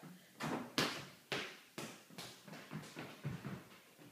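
A toddler's footsteps on a hardwood floor: a run of short, light knocks about two a second.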